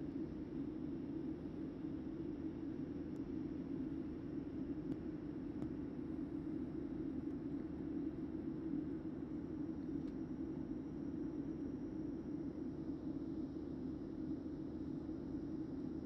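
Steady low rumble of a motorboat under way, heard on board, with no change through the stretch.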